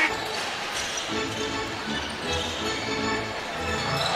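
Arena music playing over the court, with a basketball being dribbled on the hardwood floor.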